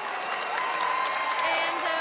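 Studio audience applauding and cheering, with one voice holding a long high 'woo' over the clapping about half a second in.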